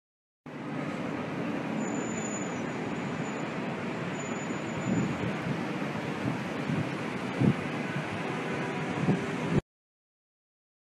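Steady city noise, a rumble of distant traffic, with a few brief louder bumps. It cuts off suddenly near the end.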